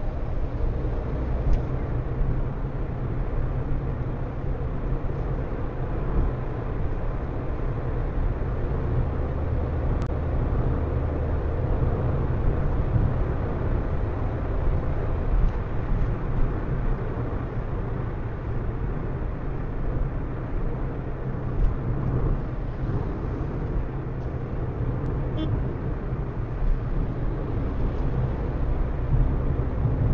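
Car cruising on a highway, heard from inside the cabin through a dashcam microphone: a steady low rumble of tyre and engine noise.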